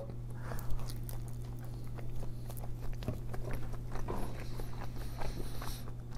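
Close-miked chewing of a bagel with lox and cream cheese: a run of small wet mouth clicks and smacks, over a steady low hum.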